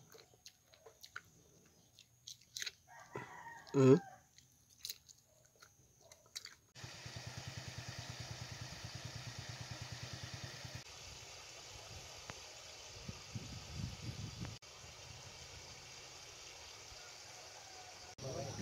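A few faint clicks and a short grunted 'hm-huh', then a steady outdoor background hiss from about seven seconds in, in which a rooster crows once about three-quarters of the way through.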